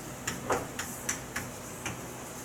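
Chalk tapping and scratching on a blackboard as characters are written: about six short, irregularly spaced clicks.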